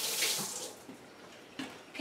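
Kitchen sink faucet running as soap is rinsed off hands, the water stopping within the first second. A quieter stretch follows with a small knock.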